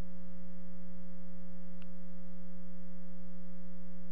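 Steady electrical hum, one low buzzy tone with a stack of overtones that does not change at all, with a faint tick about halfway through.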